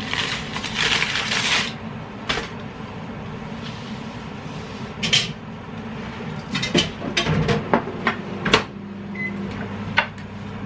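Kitchen handling noises: a rustle of packaging in the first second or two, then scattered clicks and knocks as food and dishes are picked up and set down on the counter. A low steady hum comes in after about seven seconds.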